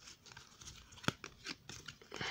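Glossy trading cards handled and shuffled in the hands: faint scattered clicks and light rustles, with one sharper click about a second in.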